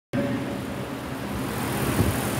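Steady background hiss of a large church hall, with a faint low hum. It starts abruptly right at the beginning.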